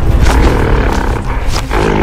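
A large animal's roar, a dubbed sound effect, starting shortly in and lasting about a second over loud background music.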